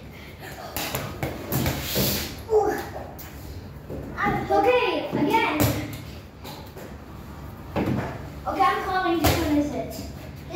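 A small child's voice babbling and calling out in short wordless bursts, with several sharp knocks and thumps from the ball and the plastic toy basketball hoop.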